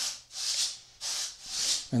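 Soft rubbing strokes, about three of them at an even pace, from hands and fingers moving against the plastic case of a handheld RC radio transmitter.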